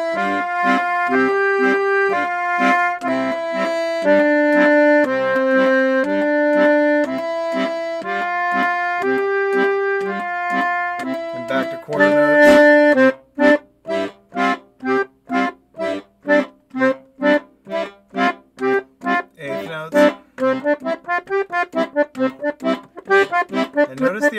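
Petosa piano accordion playing a slow right-hand scale in held notes of about a second each over left-hand bass and chords. About halfway through it switches to short, detached staccato notes with gaps between them, quickening near the end.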